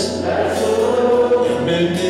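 A gospel worship song sung by several voices holding long notes, over a steady low accompanying note.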